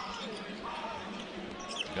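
Arena crowd noise during a basketball game, with a basketball being dribbled on the hardwood court.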